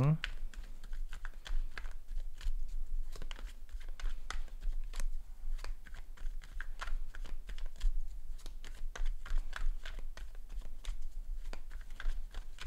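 A tarot deck being shuffled by hand close to the microphone: a steady run of irregular crisp clicks and flicks, several a second, as the cards strike and slide against one another.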